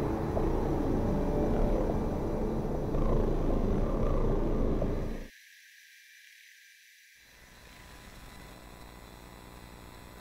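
Playback of an analogue synth recording, a dense low sound, with faint electromagnetic interference noise in the top end: thin steady high tones and hiss. About five seconds in, the synth cuts off abruptly, leaving only the faint interference hiss and whine.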